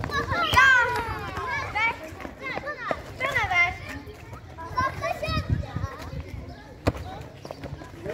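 Young schoolchildren shouting and shrieking during a ball game, their high voices rising and falling in pitch, with one sharp knock about seven seconds in.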